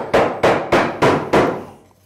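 Mallet knocking a wooden workpiece down into a router mortising jig to seat it tight: about five sharp knocks, roughly three a second, stopping about two-thirds of the way through.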